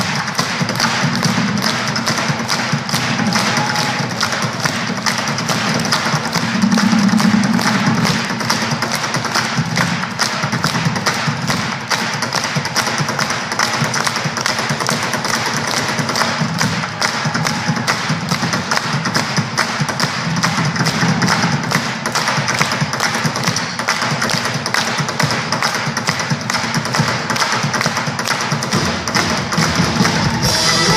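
Live acoustic band playing an instrumental passage, with acoustic guitars over a fast, busy percussive beat.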